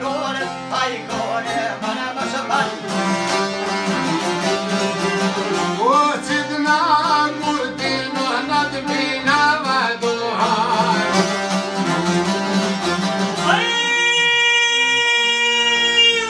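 Albanian folk music played on several long-necked plucked lutes (çifteli and sharki) with an accordion, the strings strummed in a quick, dense rhythm under a man singing ornamented, wavering phrases. Near the end a long, steady note is held.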